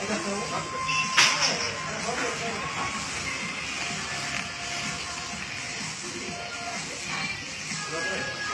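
Café background: music playing under the chatter of other people, with one sharp click about a second in.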